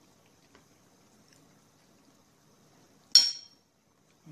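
A metal fork clinks once against a porcelain bowl about three seconds in, a sharp ring that dies away in under half a second, as food is speared from the bowl. A fainter click comes about half a second in.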